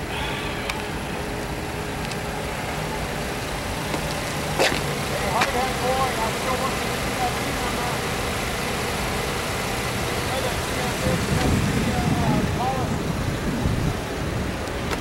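Steady low rumble of road traffic, with faint voices now and then and one sharp click about a third of the way in.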